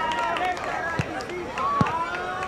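Distant, overlapping shouts of players and spectators at a soccer match, with two dull thumps: one about a second in and one near the end.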